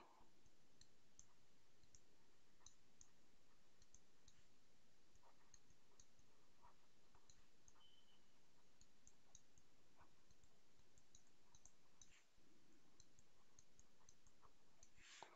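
Near silence: faint, irregular light clicks of a stylus tapping and sliding on a writing tablet as handwriting is written, over faint steady room noise.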